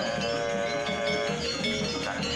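Balinese gamelan angklung playing: bronze metallophones ringing in a steady repeating pattern over a cycling low melody.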